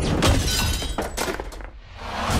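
Glass shattering and objects crashing: several sharp smashes in quick succession over the first second and a half, dying away near the end.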